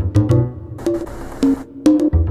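A drum-machine groove played back from Native Instruments Maschine: a looping melody over a kick drum and clicking percussion. The drums thin out for about a second in the middle while the melody carries on.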